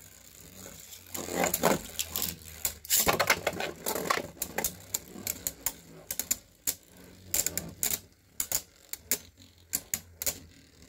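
Beyblade Burst spinning tops clashing in a plastic stadium: rapid sharp clacks of collisions, densest in the first few seconds, then sparser, irregular hits.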